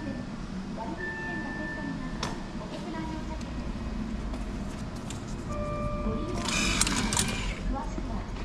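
An indistinct voice with background music and short steady electronic tones, and a brief burst of hiss about six and a half seconds in.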